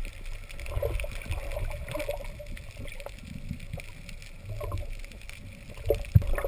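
Underwater water noise picked up by a camera housing on a speargun: a low, uneven rumble of water moving around the camera, with faint scattered clicks and crackles.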